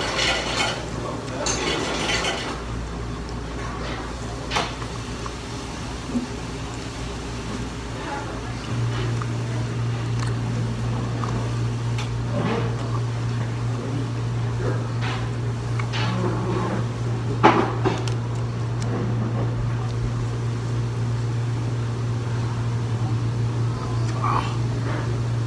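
A person eating chicken wings close to the microphone: chewing and mouth sounds with scattered short clicks and smacks. A steady low hum comes on about nine seconds in and keeps going.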